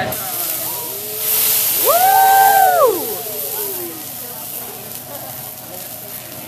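Hot teppanyaki griddle sizzling with a loud hiss as liquid from a squeeze bottle hits the steel, loudest in the first two seconds and then dying down. About two seconds in, a person's drawn-out exclamation rises and falls for about a second.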